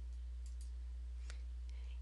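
Faint computer mouse clicks, the clearest a little over a second in, over a steady low electrical hum.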